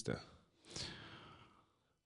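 A man's faint breath out, a sigh lasting about a second, heard close on a microphone.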